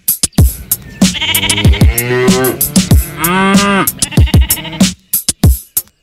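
Sheep bleating: a few long, wavering calls in the middle, over a children's music track with a steady kick-drum beat.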